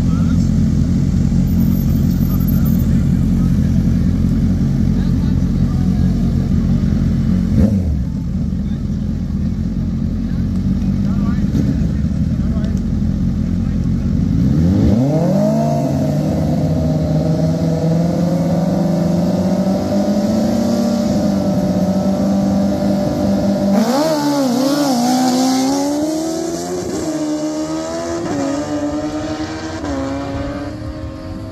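Two sport motorcycles at a drag-race start line: engines idling with a deep rumble, then about halfway through the revs rise and are held high. Near the end the bikes launch and accelerate away, the engine pitch stepping up through several quick upshifts as the sound fades down the track.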